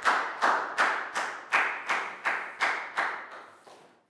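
A class clapping together in a steady rhythm, nearly three claps a second, fading out near the end.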